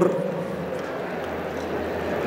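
Steady background noise of a large crowd in an arena, an even murmur with no distinct events.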